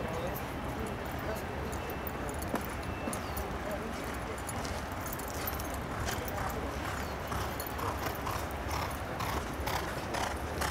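Hoofbeats of a galloping racehorse on a dirt track, an even beat of about three strokes a second that grows clearer from about halfway, over a low steady rumble.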